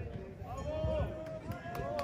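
Faint voices of people talking in the background: short, quiet snatches of speech.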